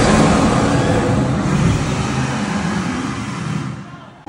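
Loud rushing burst of flame from the fire-breathing dragon atop the Gringotts bank, loudest at the start and fading away over about four seconds.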